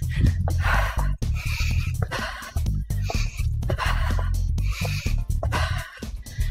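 A woman breathing hard in quick, even breaths, about one every three-quarters of a second, from the exertion of a fast cardio interval, over background music with a steady low beat.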